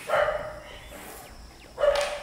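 A dog barks twice: a short bark at the start and another near the end.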